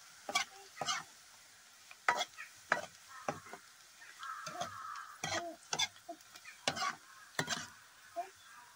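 Metal ladle scraping and knocking around a metal kadai, about a dozen irregular strokes, as sliced onions are stirred in hot oil, with the oil sizzling underneath. The onions are frying toward golden brown.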